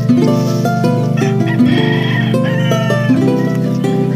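Background music of plucked strings playing a steady run of notes. A higher, wavering call sounds over it from about one to three seconds in.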